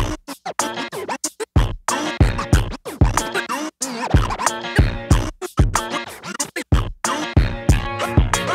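Vinyl record scratching on a turntable, the sample sliding up and down in pitch and chopped into short bursts by quick mixer-fader cuts, over a hip-hop drum beat.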